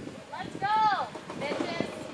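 A high-pitched voice calls out once, its pitch rising then falling, followed by a shorter, softer vocal sound.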